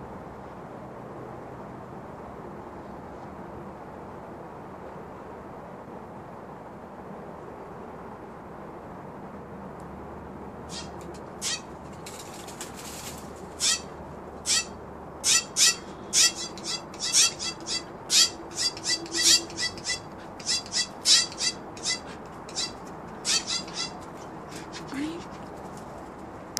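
Steller's jays calling: after about ten seconds of steady outdoor hiss, a long run of short, sharp, high calls, about one to two a second, starts about eleven seconds in and goes on until near the end.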